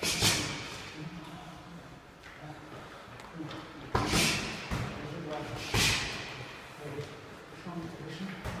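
Boxing-glove punches landing on a partner's gloves or pads: three sharp smacks, at the start and about four and six seconds in, with softer hits between, echoing in a large hall.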